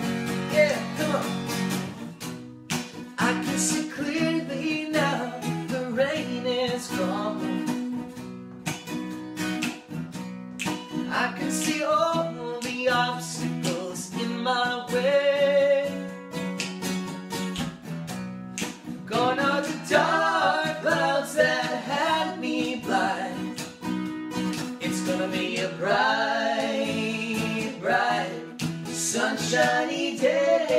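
Acoustic guitar strummed steadily, with male voices singing over it.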